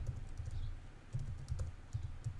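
A few faint keystrokes on a computer keyboard as code is typed, over a low steady background hum.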